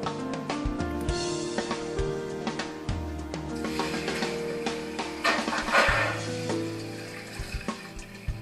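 Background music playing over water running from two tubes into containers. The splashing swells to its loudest about six seconds in, then fades.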